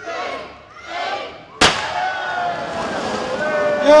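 A handheld confetti cannon going off with a single sharp bang about a second and a half in, followed by a crowd cheering.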